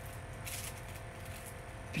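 Quiet room tone with a steady low hum, and a faint brief crinkle of clear plastic packaging under a hand about half a second in.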